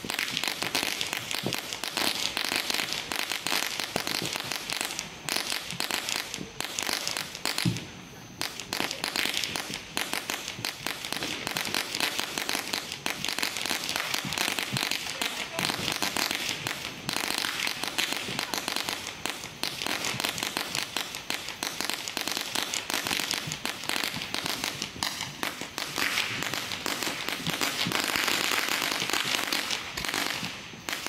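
Fireworks going off in a long, dense crackle of rapid pops, with a brief lull about eight seconds in.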